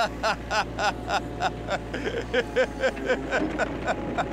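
Metal trowel scraping soil and stone in quick, regular strokes, about three a second, each stroke giving a short squeak.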